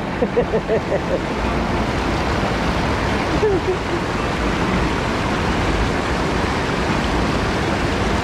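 River water pouring over a low weir, a steady rushing roar with no breaks. A man laughs briefly at the start and makes a short vocal sound about three and a half seconds in.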